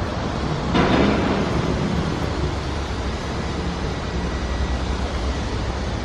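Steady outdoor rumble of street traffic noise on a handheld camera's microphone, with a brief louder rush about a second in.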